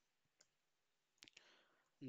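Three faint computer keyboard keystrokes, one about half a second in and two close together past the middle, in near silence.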